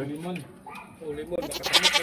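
A long, wavering animal bleat starting about one and a half seconds in, with a man's voice around it.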